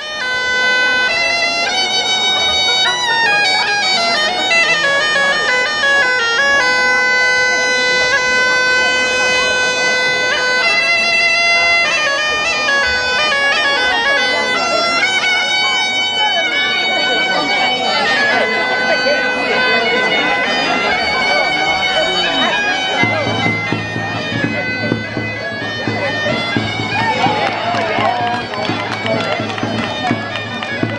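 Gaita de fole (Galician-style bagpipe) playing a stepwise folk dance tune over a steady drone, with a tamboril drum accompanying.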